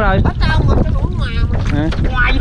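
Wind buffeting the microphone as a small boat moves across open river water, a steady low rumble, with a man's voice talking over it in parts.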